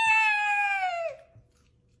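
A woman's high-pitched squeal, held for about a second and sagging in pitch as it ends, then cut off to silence.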